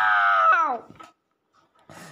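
A girl's high, drawn-out whining cry that slowly falls in pitch and drops off under a second in, followed by silence.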